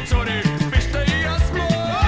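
A rock song playing: a singer over a full band, with a steady drum beat of about three beats a second.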